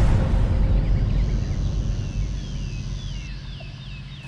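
Birds chirping, a run of short falling whistles in the second half, over a low rumble that fades away. A thin, steady high tone sounds through the middle.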